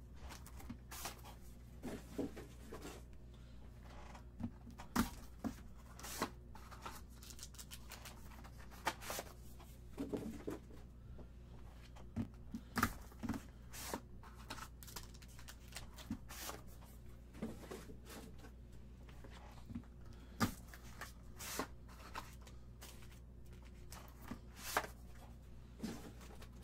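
Hands opening a Panini Origins football card box: tearing into the box and its wrapper and handling foil-wrapped card packs, a long run of scattered taps, rustles and crinkles over a low steady hum.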